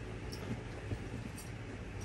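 Soft handling sounds of packing: light rustles and a few small clicks as shoes and a fabric bag are moved about, over a steady low hum.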